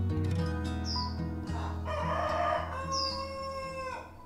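A rooster crowing once, starting about two seconds in with a harsh rising note, then a held call that drops off at the end, over soft acoustic-guitar music. Two short, high, falling bird chirps come about a second in and again near the end.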